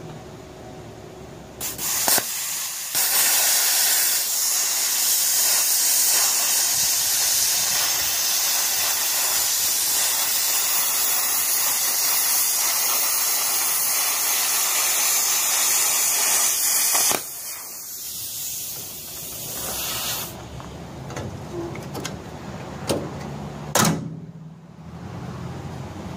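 Plasma cutter cutting a steel plate: a steady, loud hiss of the arc and air jet that starts about two seconds in and runs for about fifteen seconds. When the arc stops, the air keeps hissing more quietly for about three seconds. After that come a few clicks and handling sounds.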